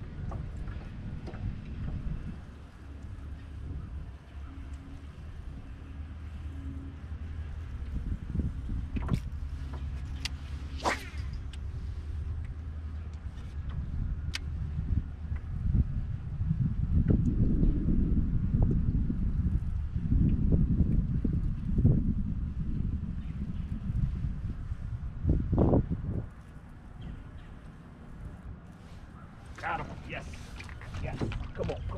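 Open-air noise on a small fishing boat: wind on the microphone and water around the hull, a low rumble that swells louder for several seconds midway through. Under it runs a faint steady low hum, and a few sharp clicks come about a third of the way in.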